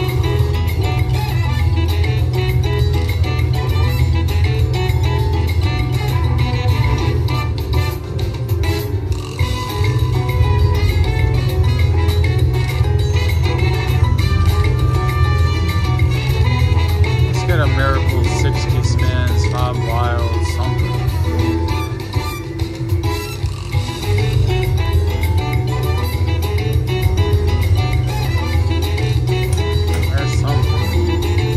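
Slot machine music playing continuously through a free-spins bonus over a steady repeating bass beat, with indistinct voices in the background.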